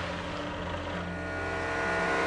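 Steady machine hum of a pneumatic feed-pellet delivery, pellets being blown through a pipe into a bulk bag. The hum carries several steady tones and grows slightly louder.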